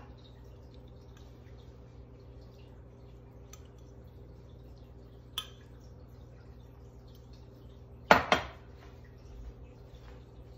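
Metal measuring spoon working water out of a glass measuring cup into a muffin tin: mostly quiet, with a light clink about halfway through. Late on come two loud knocks close together as the glass measuring cup is set down on the counter.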